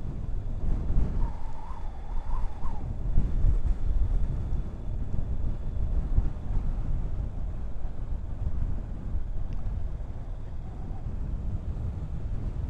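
Wind rumbling on the microphone of a Honda NC750X motorcycle on the move, with the bike's running beneath it.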